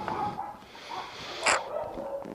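A dog behind a gate giving one short, sharp bark about three-quarters of the way in, after some fainter whining.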